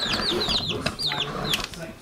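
Young chicks peeping: short, high, falling peeps, several a second, thinning out toward the end.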